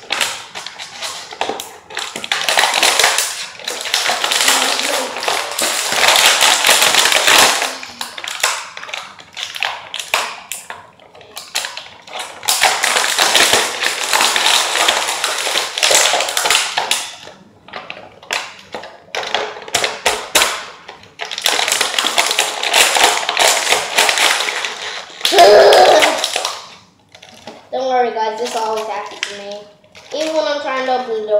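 Clear plastic toy packaging crinkling and rustling as it is handled and pulled open, in three long stretches with pauses between. A short loud burst comes about 25 seconds in, and a brief voice is heard near the end.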